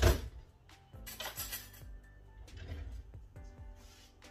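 A loud knock right at the start, then a clatter about a second later as kitchen utensils are handled at the counter and a metal spoon is fetched to scoop avocado. Soft background music plays underneath.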